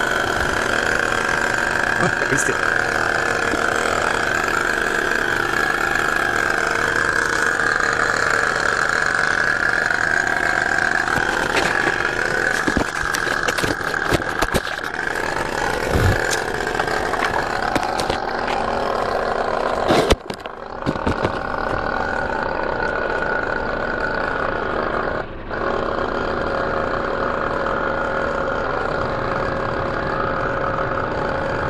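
Portable tyre air compressor running steadily, pumping air through a hose into a car tyre whose leak has been sealed with silicone. A few sharp clicks and knocks come in the middle, and the sound drops out briefly about twenty seconds in.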